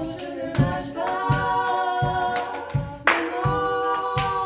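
Three women's voices singing close a cappella harmony in held chords, over a steady low thump about every three-quarters of a second from a calabash played with the foot. Body-percussion slaps and claps, with one sharper slap about three seconds in.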